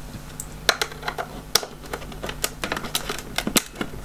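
A small screwdriver working a screw out of a plastic toy casing: a run of irregular sharp clicks and taps as the tip catches and turns the screw and the plastic is handled.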